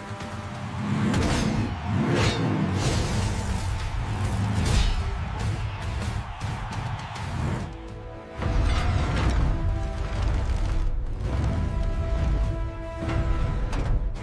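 Dramatic cartoon score with sound effects laid over it: several whooshes and a deep rumble that grows heavier about halfway through.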